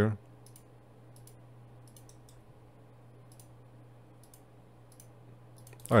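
Faint, scattered clicks of a computer mouse and keyboard, about a dozen irregular clicks over a steady low electrical hum.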